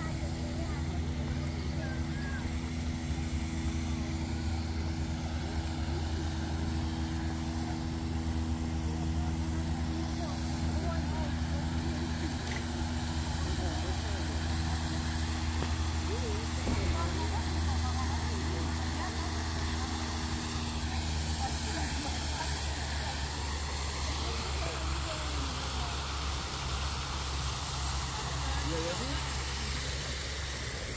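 A fountain's spraying water hisses steadily and grows louder in the second half. Under it runs a steady low mechanical hum whose higher tones drop out a little past two-thirds of the way through, with scattered voices of people around.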